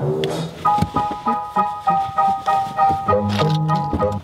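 Pickup truck's in-cab warning chime dinging steadily, about three dings a second, the kind a truck gives when a door is open or a seatbelt is unbuckled with the key in.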